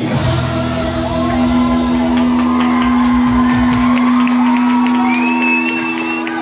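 Live rock band sustaining one long held chord in a large hall while the audience shouts and whoops. A high thin tone rises and holds near the end.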